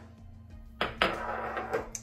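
A measuring spoon tapped against a bowl while dried dill is tipped in: a sharp tap about a second in, then about a second of dry rustling, ending in a small click.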